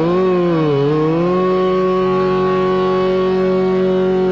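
Male Hindustani classical voice in raga Pahadi: a slow glide down and back up, then a long steady held note, with instrumental accompaniment.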